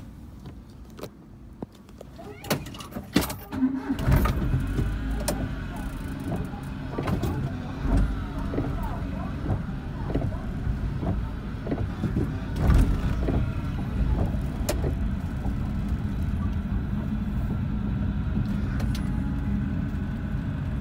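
A few knocks, then a kei van's engine starts about four seconds in and runs steadily. The windshield wipers sweep water off the wet glass in a repeating rhythm while the van moves off.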